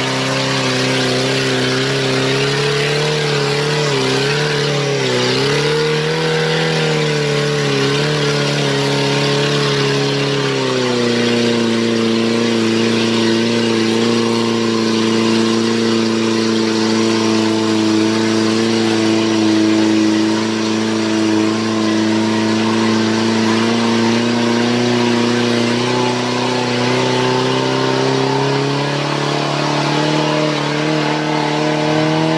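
Suzuki 4x4's engine running under load in deep mud, its pitch wavering up and down with the throttle. About a third of the way in it drops to a lower, steady note and holds there, then rises again near the end.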